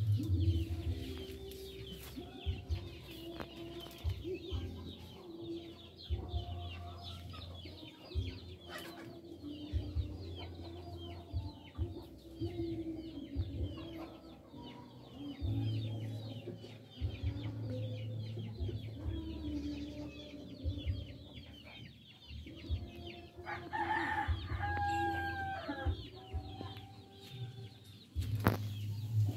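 Chickens: a rooster crows once near the end, over a continuous high chirping and an intermittent low rumble.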